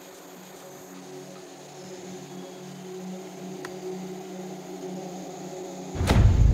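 Background music: a low sustained drone of held tones, slowly swelling louder, with one faint click a little past the middle.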